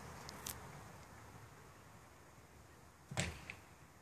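Very faint outdoor background with no clear source, a single light click about half a second in, and a brief soft noise a little after three seconds.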